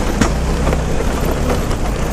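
Vespa scooter ridden over rough cobblestone paving: a steady rumble of engine and tyres on the stones, with a few short knocks from the jolts.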